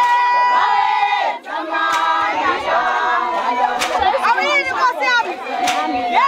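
Group of women singing in chorus, with shouted calls and a high wavering cry about four to five seconds in.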